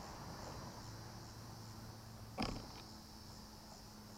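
Faint, steady high-pitched insect buzz, with one short sharp sound a little past halfway and a couple of faint clicks just after.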